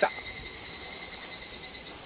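Steady, high-pitched chorus of insects in summer woodland, an unbroken drone that does not rise or fall.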